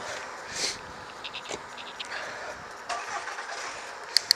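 Steady wind and road noise from riding a bicycle along a street, with a short sniff about half a second in and a few light clicks.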